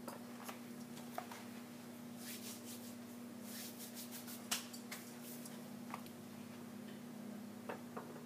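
Soft, scattered taps and rustles of hands handling flour and balls of dough on a granite countertop, with one sharper click about halfway through, over a steady low hum.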